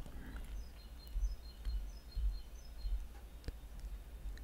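Quiet room tone with a low steady hum, a scatter of faint short high-pitched chirps, and a single soft click about three and a half seconds in.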